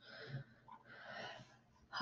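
Faint breathing close to the microphone: two soft, hissy breaths, one at the start and a longer one in the middle.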